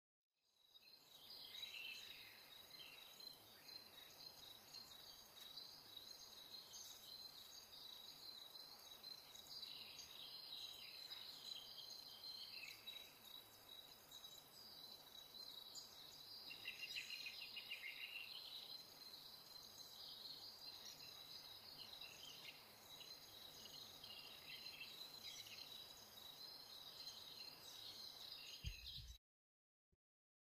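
Faint AI-generated night rainforest ambience from Stable Audio Open 1.0: a steady high insect-like chirring with scattered bird chirps over a soft hiss. It cuts off abruptly shortly before the end.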